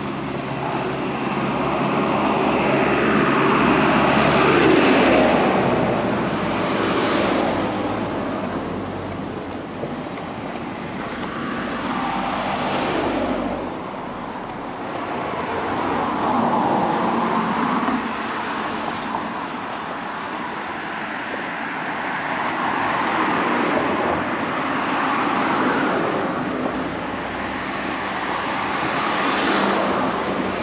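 Road traffic: several vehicles, including a small truck, drive past one after another, each swelling up and fading away, the loudest about five seconds in.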